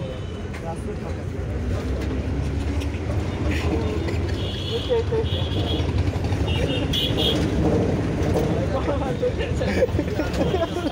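Steady low rumble of a moving city bus's engine and road noise heard from inside the cabin, with passengers' voices over it. A run of short high beeps comes about halfway through.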